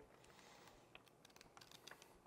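Near silence, with a few faint light ticks of paper pages of an instruction manual being handled.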